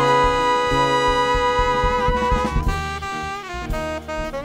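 Jazz septet playing: the horns (trombone, trumpet and saxophone) hold one long note over the drums for about two and a half seconds, then move on to shorter notes.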